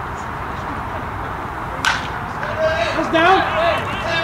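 A baseball bat hits a pitched ball with a single sharp crack a little under two seconds in, followed by players' voices calling out.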